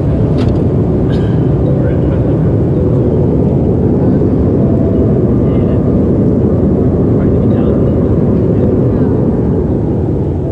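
Steady cabin roar of a CRJ700 regional jet in flight: engine and airflow noise heard from a passenger seat, loud and unbroken.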